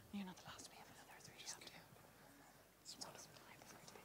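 Faint, indistinct voices speaking low, like whispering or quiet chatter, too soft to make out words. They cut in abruptly out of near silence at the start.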